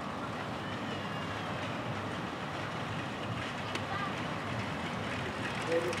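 Steady outdoor rumble and hiss with faint distant voices; a voice starts right at the end.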